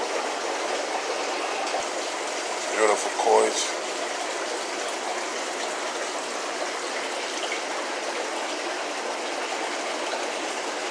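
Steady rush of running water from aquarium tanks' filtration, with a brief voice about three seconds in.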